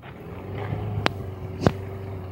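A steady low motor hum that builds up over the first half second, with two sharp clicks a little over half a second apart in the second half, the second one louder.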